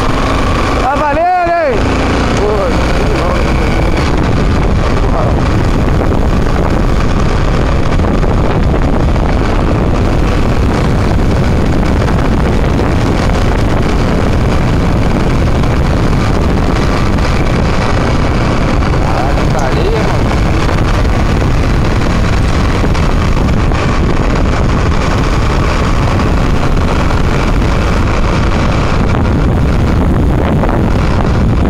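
Steady, loud rumble of the motor vehicle carrying the camera, mixed with wind buffeting the microphone as it follows the racing sulkies at speed. A brief shout rises and falls about a second in.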